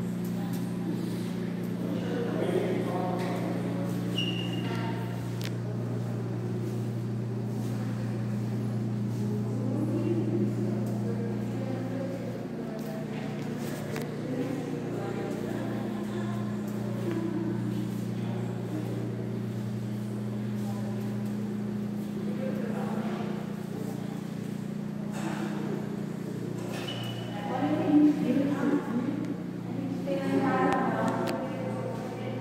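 Steady low hum with faint, indistinct voices talking in the background; a voice comes up louder near the end.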